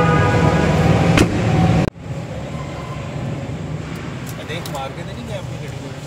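A vehicle horn sounding one steady held note that stops about a second in, then, after an abrupt cut, steady traffic noise.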